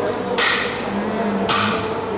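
Two sharp knocks about a second apart, each fading quickly, over steady room background.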